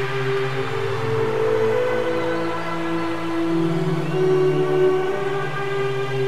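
UK bounce house dance music in a breakdown: sustained synth chords held with no drum beat, changing chord every second or so.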